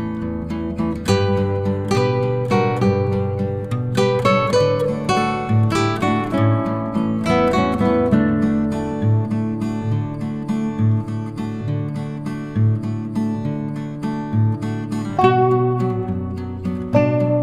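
Background instrumental music with plucked string notes and a steady bass line.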